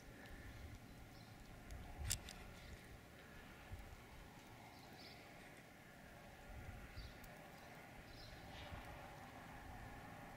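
Faint wind buffeting the microphone in low gusts that swell a few times, with a few small clicks, the sharpest about two seconds in.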